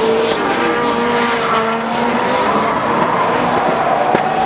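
Drift cars sliding through a corner: engines held at high revs, their pitch climbing and wavering after about two seconds, over the rushing noise and squeal of tires spinning and skidding on the track.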